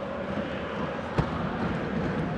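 Football stadium ambience: a steady haze of crowd noise, with one sharp knock a little over a second in from a football being kicked.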